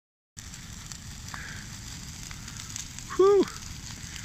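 A brush pile of pine branches burning hard: steady fire noise with a few faint pops. About three seconds in comes one short, loud vocal sound.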